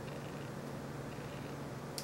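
A faint, steady low hum with no breaks or strikes.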